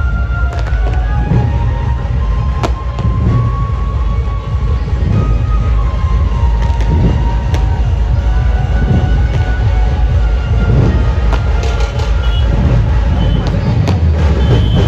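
Loud procession music from a dhumal sound-system rig, its heavy bass distorting the microphone, with a melody line over a steady beat and a few sharp cracks.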